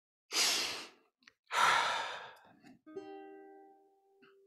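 Two heavy breaths close to the microphone, then a single ukulele chord plucked about three seconds in, ringing briefly and fading.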